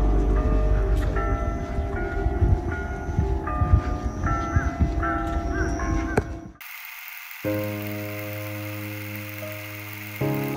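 Church bells ringing outdoors over wind rumble on the microphone. The sound cuts off suddenly about six and a half seconds in, and soft sustained background music follows.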